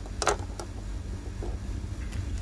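A light click of a plastic model aircraft wing being set down on a wooden table about a quarter second in, followed by a few faint handling ticks, over a steady low rumble.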